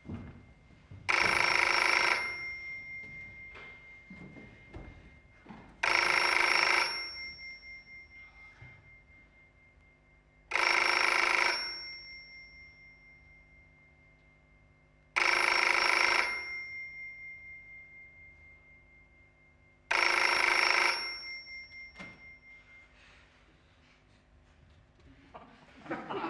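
An electric bell rings in five bursts of about a second each, evenly spaced about four and a half seconds apart, each ring leaving a tone that dies away slowly.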